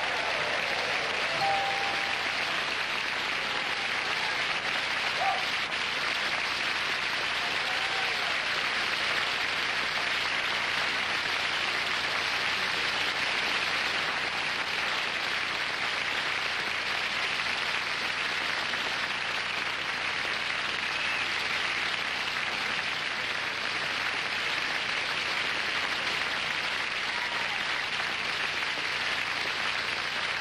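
Studio audience applauding steadily, a long ovation for a winning answer.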